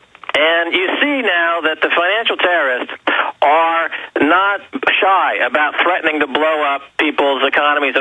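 Speech only: a man talking continuously over a narrow, telephone-like line.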